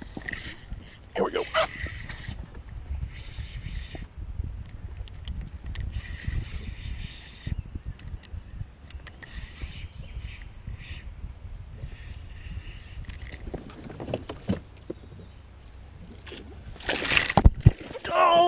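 A spinning reel being worked on a hooked fish over a low rumbling background, then a loud splash near the end as the bass thrashes at the landing net beside the boat.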